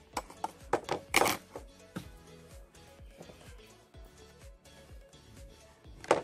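Background music with a steady beat, and a few sharp knocks in the first second and a half, the loudest a little over a second in.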